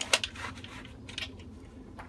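A sharp click just after the start, then a few fainter clicks and light rustling over a low, steady background.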